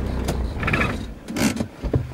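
A 4WD's engine idling, heard from inside the cab, stops about a quarter of the way in. A few short mechanical clicks and rattles from the cab follow, the last a sharp click near the end.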